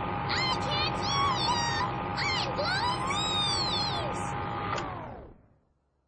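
Cartoon vacuum cleaner running with a steady whirring hum, and high, gliding cries over it. The hum winds down with falling pitch about five seconds in.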